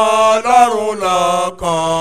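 A man singing solo into a handheld microphone in a chanting style, with long held notes that bend slowly in pitch and short breaks between phrases.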